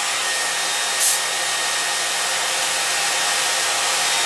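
Hair dryer running steadily, a constant blowing rush, with a brief sharper hiss about a second in.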